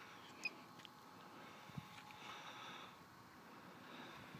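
Near silence: a quiet outdoor background with a faint steady high whine, and a single click about half a second in.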